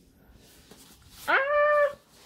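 A house cat meowing once, a drawn-out meow that rises at the start and then holds its pitch, about a second and a quarter in.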